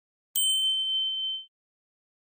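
A single bright notification-bell ding, a sound effect for a subscribe button's bell icon. It starts a moment in and rings for about a second before fading out.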